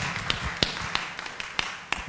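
Audience applause dying away, the clapping thinning out to a handful of scattered single claps.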